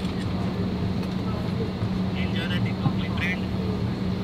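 Steady low drone inside an airliner cabin, with faint voices about halfway through.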